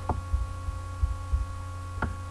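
Steady electrical hum of the narration recording, low with a thin higher whine line, and three soft low thumps.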